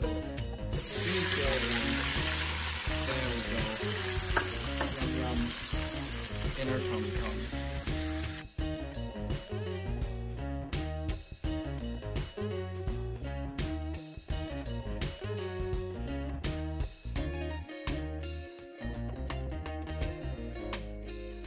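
Sliced onions and green bell peppers frying in hot oil in a nonstick pan, sizzling loudly as they go in, then cutting off suddenly about eight seconds in. Background music runs throughout, with scattered light clicks in the later part.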